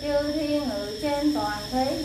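Vietnamese Buddhist chanting: a woman's voice intones a prayer in a slow sung melody, holding long notes and sliding between pitches.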